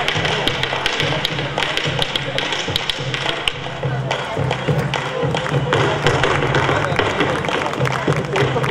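A bombo bass drum beaten with sticks in a steady rhythm, with many sharp taps from a malambo dancer's footwork striking the stage.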